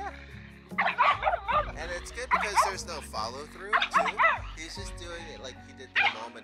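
A dog barking and yipping in several high, shrill bursts, with whines between them: reactive barking from a dog straining on its leash toward another dog.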